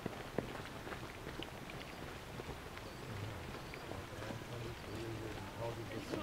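Faint steps of runners on a gravel path, scattered light ticks over a quiet outdoor background.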